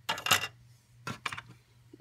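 Small plastic dollhouse pieces clattering as a hand rummages inside a plastic Barbie toy fridge: a loud rattle of clicks at the start, then a few lighter clicks about a second in.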